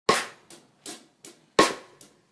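Drum kit starting a slow beat out of silence: a loud hit about every second and a half, each ringing out briefly, with lighter strokes in between.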